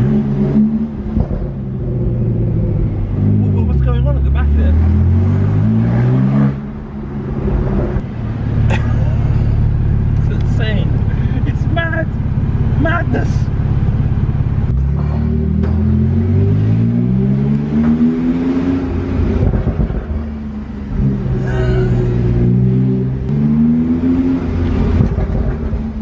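Porsche 911 Turbo S twin-turbocharged flat-six pulling through city streets, heard from the open cockpit with the top down: the revs drop away early on, hold low for several seconds, then climb twice as the car accelerates.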